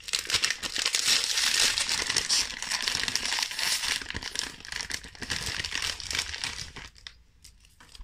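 Crinkling plastic packaging of Werther's Original sweets, the bag and a sweet's wrapper handled and worked open with many small crackles. It is busiest in the first few seconds and dies away about a second before the end.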